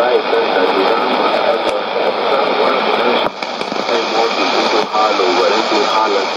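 Shortwave AM broadcast of a voice talking, played through a Sony portable receiver's speaker and half buried in a steady hiss of static. The signal fades briefly a little past three seconds in.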